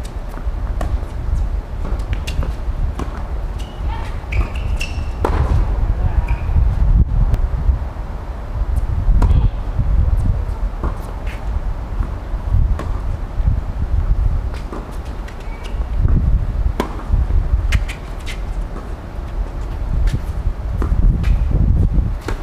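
Doubles tennis rally on a hard court: sharp racket-on-ball strikes and ball bounces every second or two, over a constant low rumble.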